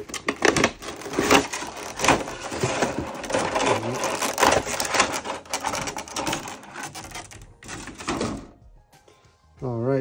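Clear plastic packaging crinkling and crackling, with cardboard rustling, as a boxed figure is unpacked: a dense run of crackles that dies away about a second and a half before the end.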